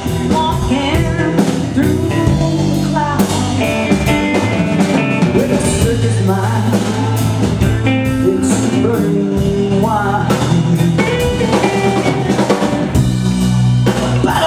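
Live blues-rock band playing: electric guitar with bending notes over bass and drum kit, with a woman singing.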